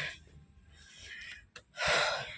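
A person's breath close to the microphone: a breathy exhale fading out at the start, then, after a short click, a sharp loud intake of breath near the end.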